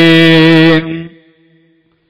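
A man's voice holding one long chanted note, which breaks off under a second in, its echo fading away into silence.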